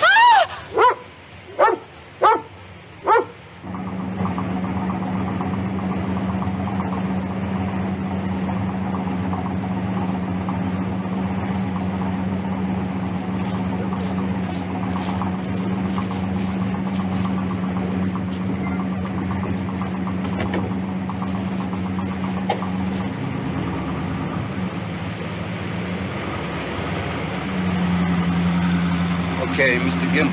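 A Doberman barks about five times in quick succession in the first few seconds. A steady low hum with a held tone follows, changing pitch near the end.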